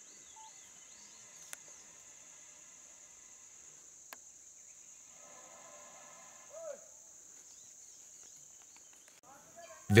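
Faint forest ambience: a steady high-pitched insect drone with a few faint bird chirps and a couple of small clicks. The drone cuts off near the end.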